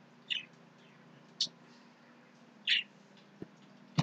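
A bird chirping: a few short, falling chirps, three of them clearly louder. Two short clicks near the end.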